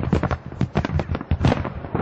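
Rapid, irregular crackling of sharp cracks and pops, several a second, as munitions in a demolished weapons cache go off in secondary detonations.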